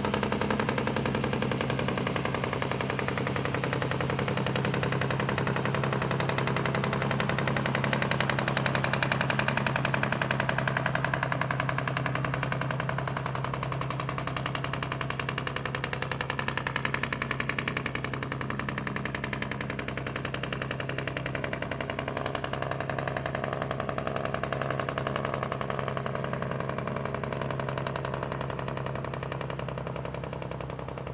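Diesel engine of a loaded dump truck running, its exhaust a rapid, even pulsing with a steady low hum. It fades slowly as the truck moves away.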